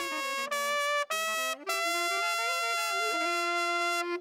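Solo trumpet playing a short melody note by note, with brief breaks about a second in, ending on a long held note.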